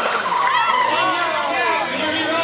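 Drift car sliding sideways, its engine revving with the pitch rising and falling while the tyres squeal.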